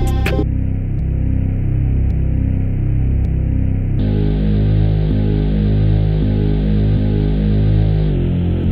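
Bass line playing through an 1176-style compressor plugin (Mixbox's Black 76). The drums of the full beat drop out just after the start, leaving the bass alone, and about halfway the bass turns brighter and fuller as the compressor's knobs are turned.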